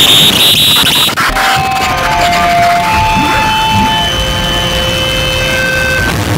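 Harsh noise music: a dense wall of distorted noise with a high piercing screech for the first second, then several held whistling tones at different pitches over a rough, steady rumble.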